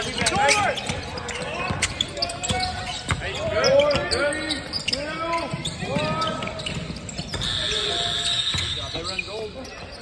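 Basketball game on a hardwood court: sneakers squeaking again and again as players run and cut, with a basketball bouncing and players' voices.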